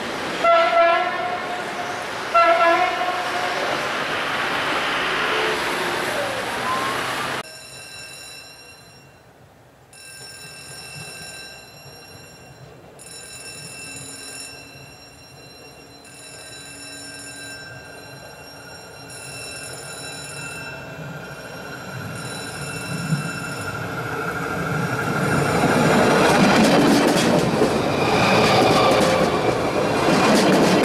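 Stadler GTW 2/6 diesel railcar sounding its horn twice, each blast under a second long. After a cut, a level-crossing warning signal rings on and off at an even pace. The train's running noise then builds up as it approaches and passes close by, loudest near the end.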